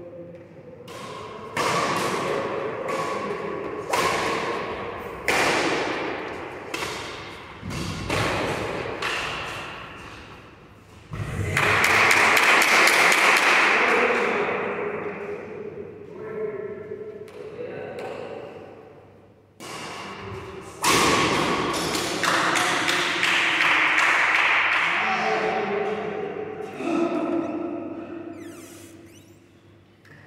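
Badminton racket strikes on a shuttlecock during rallies, a sharp hit about every second or so, each echoing in the large hall. Two longer, louder stretches of rushing noise come in the middle and later on.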